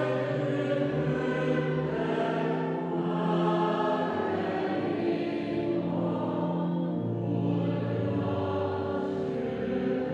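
A choir singing a slow hymn, with long held chords that change every second or two.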